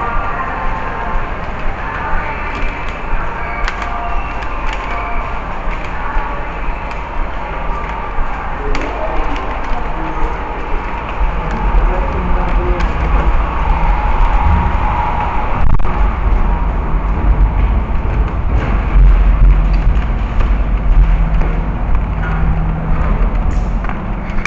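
Mixed background ambience with faint music in the first few seconds, then a low steady rumble that grows louder about halfway through.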